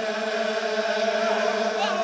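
Crowd of men chanting together in unison, holding one long steady note.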